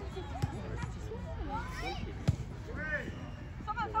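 A soccer ball kicked with a single sharp thud a little over two seconds in, after a lighter knock near the start, with faint voices calling across the field.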